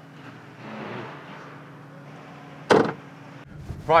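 A quiet outdoor background, then near the end a single loud slam of a car body panel being shut.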